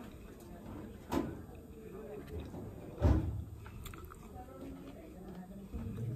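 A person chewing a mouthful of food close to the microphone, with two brief louder mouth or utensil sounds, about a second in and about three seconds in.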